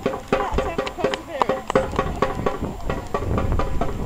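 Samba band percussion playing a light rhythm: quick, even sharp strikes with short ringing tones, with voices talking over it.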